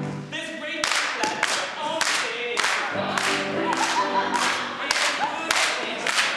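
A group of singers singing a show tune in chorus, with hand claps on the beat roughly every half-second starting about a second in.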